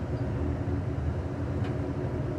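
Steady low rumble of an Amtrak passenger train's rear car rolling along the track, heard from inside the car, with a faint steady hum above it.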